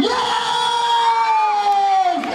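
A person's voice holding one long, high shout that slowly falls in pitch for about two seconds, over crowd noise.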